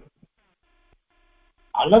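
A man's voice giving a lecture in Tamil: he breaks off at the start, there is about a second and a half of near silence, and he resumes speaking near the end.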